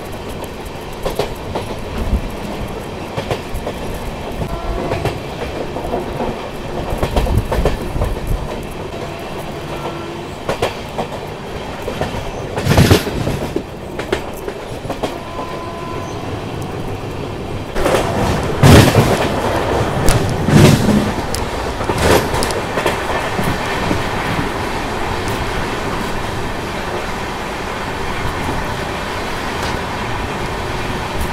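Passenger express train running at speed, heard from beside its coaches: a steady rumble of wheels on the track with scattered clicks. There is a louder burst of noise about 13 seconds in and a louder stretch around 18 to 22 seconds in.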